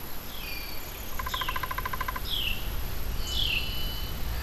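Birds calling: about four short, falling chirps spaced roughly a second apart. A rapid, even trill of about ten pulses a second runs for about a second in the middle. A thin, steady high tone sounds underneath.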